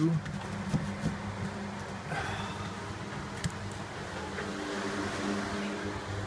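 A steady low hum, with faint rustling and a few light taps as a paper template is handled against a bulkhead.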